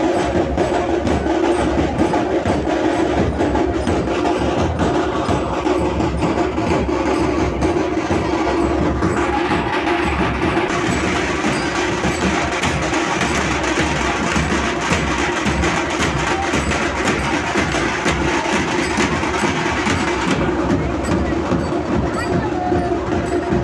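Large dhol drums beaten continuously in a dense, steady processional rhythm. A brighter high layer joins about nine seconds in and drops out about twenty seconds in.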